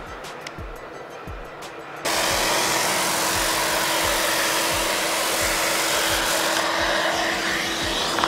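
A JOST Big Boy large-area random orbital sander with 180-grit paper and dust extraction starts about two seconds in. It then runs steadily over a solid wood panel, an even, loud sanding noise over a constant motor hum.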